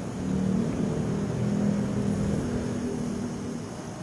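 A steady low engine hum made of a few even tones, fading away in the last second or so.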